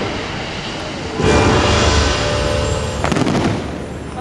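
Fireworks shells bursting in a loud barrage, with a big burst about a second in and a cluster of sharp cracks about three seconds in.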